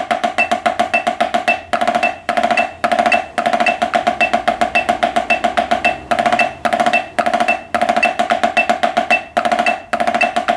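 Wooden drumsticks on a drum head playing five-stroke rolls and sixteenth notes. The strokes are rapid and even, with no accents, and come in short groups separated by brief breaks, each stroke with a bright, ringing pitch.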